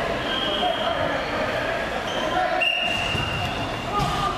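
Echoing gymnasium din from a floor hockey game at a stoppage: players' voices and chatter carrying through a large hall, with two brief high-pitched squeaks.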